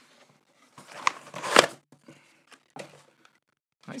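A cardboard shipping box and a mug's packaging being handled as the mug is lifted out: rustling and scraping, loudest about a second and a half in, then a few softer rustles.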